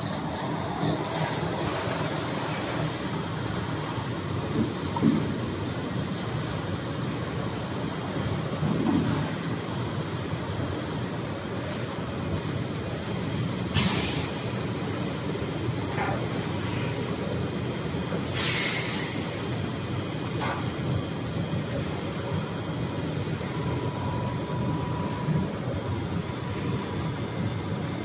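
Steady hum of tape-slitting workshop machinery, with two short hisses of compressed air about 14 and 18 seconds in, and a few light knocks of handled tape rolls and shafts.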